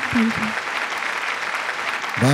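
Audience applauding: a steady wash of clapping just after a song with tabla ends.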